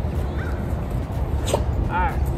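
Young Labrador retriever whining in a few short, high, falling squeaks over a steady low rumble.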